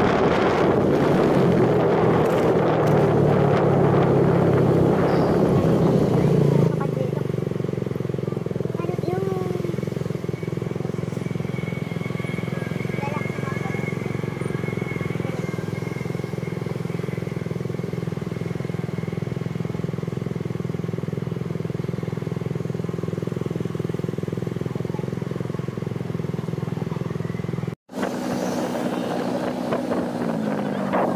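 Motorcycle engine under way with wind buffeting the microphone. From about seven seconds in, the wind drops away and the engine idles steadily as the bike waits at a stop.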